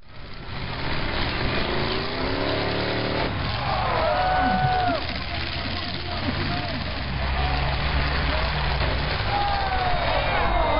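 Demolition derby car engines running in the arena, one revving up with a rising pitch in the first few seconds, under a general crowd din. A voice calls out loudly in the middle and again near the end.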